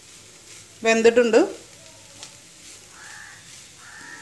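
Shredded cabbage faintly sizzling in a nonstick frying pan while a wooden spatula stirs and scrapes it.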